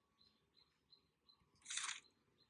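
Near silence, then near the end a single short, soft swish of a page turning in an on-screen flipbook.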